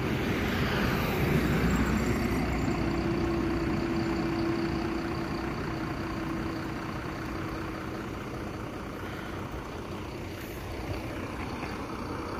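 Highway traffic going by a stopped vehicle on the road shoulder: a passing vehicle swells over the first couple of seconds and then slowly fades, with a steady hum partway through.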